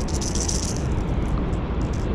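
A brief rattling hiss of fishing tackle being handled in the first second, over a steady low rumble.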